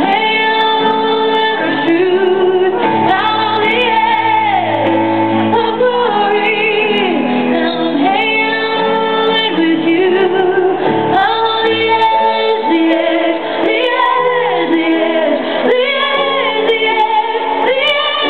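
A woman singing live over a grand piano accompaniment, amplified through a large concert sound system and recorded from within the crowd. Her long held notes waver with vibrato over sustained piano chords.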